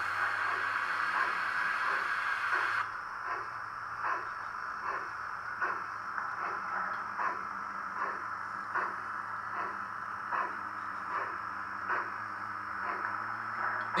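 HO scale model steam locomotive moving slowly, with soft, evenly spaced beats a little over one a second over a steady hiss.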